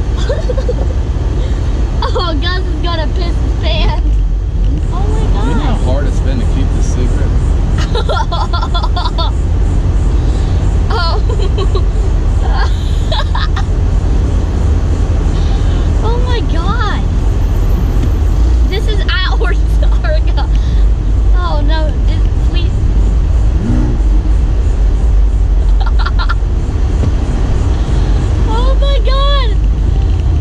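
Steady low rumble of engine, road and wind noise in the open cockpit of a 2018 Porsche 911 Targa 4 GTS, with voices talking over it now and then.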